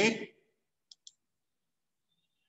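Two quick, faint clicks about a fifth of a second apart, about a second in, like a computer mouse button being clicked; a man's spoken word trails off just before.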